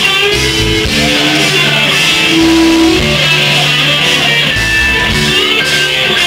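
Electric guitar, a Stratocaster-style solid-body, playing a lead line of held and bending notes over the bass and drums of a live rock band.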